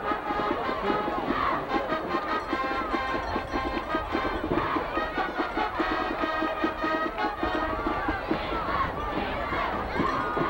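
Band music with horns playing over a steady drum beat, mixed with the continuous noise of the stadium crowd.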